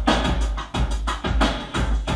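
Programmed beat from an Alesis SR-18 drum machine playing a groove, with sharp drum hits about four times a second over a steady low bass.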